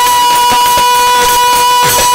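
A woman singing a baul song into a microphone, holding one long high note at a steady pitch over the band, with a few percussion strokes.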